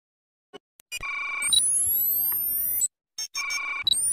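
Synthesized electronic sound effect: after a few faint clicks, steady high beeping tones with rising whistling sweeps above them start about a second in. It cuts off suddenly near the three-second mark and, after a couple of clicks, starts again near the end.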